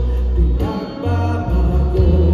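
Live worship band music through a PA: drums and electric guitar under sung vocals, with a heavy low end. The music thins briefly about a second in.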